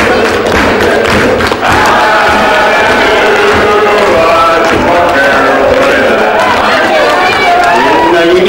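A man singing a song into a microphone, with long held, wavering notes and crowd noise behind him.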